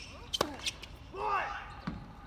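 Tennis ball struck hard by a racket in a forehand, a sharp pop about half a second in, with a smaller knock soon after. Then a short voiced shout, the loudest sound.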